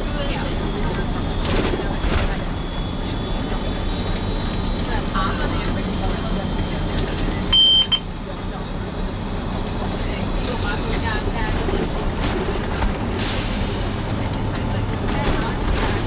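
Inside an MCI 96A3 coach on the move: a steady low engine hum and road noise, with a short, high electronic beep about halfway through.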